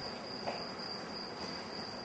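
Crickets chirring steadily, a thin high sound over faint room noise.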